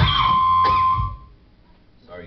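A man coughing hard into his cupped hand close to the microphone: a sudden loud burst and a second one about half a second later, with a high steady tone ringing through them for about a second before it dies away.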